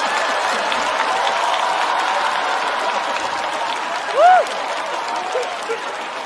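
Studio audience applauding a joke, with a brief rising-and-falling whoop from someone in the crowd about four seconds in; the applause slowly dies away.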